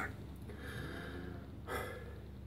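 A faint breathy hiss, then one short, sharp snort-like puff of breath about one and a half seconds in.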